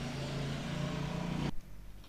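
A steady low mechanical hum in the background, cutting off suddenly about one and a half seconds in.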